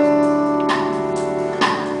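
Live band playing an instrumental bar of a slow pop ballad between sung lines: sustained chords with a strum on the acoustic guitar about two-thirds of a second in and again near the end, over a held keyboard-like tone.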